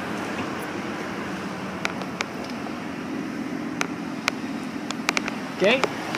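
2003 Dodge Durango engine idling with a steady low hum, with a few light sharp clicks from the door being handled.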